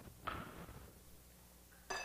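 A soft knock with some handling noise about a quarter second in, then near the end a sharp clink of glass on glass that rings briefly: a small glass dish touching a glass mixing bowl.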